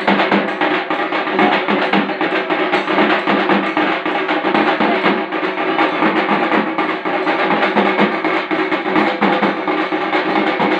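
Loud drum music with a fast, steady beat, with a held drone under the drumming.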